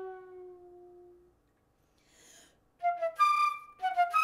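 Solo concert flute: a long low note dies away in the first second, then after a pause a short soft intake of breath. Near the end a run of short, loud, detached notes starts.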